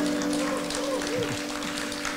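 Scattered audience applause and faint voices as an acoustic song ends, with a steady low tone held under them.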